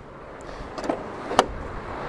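Honda Civic rear door being opened: two short clicks about half a second apart from the handle and latch, the second sharper, over faint outdoor background.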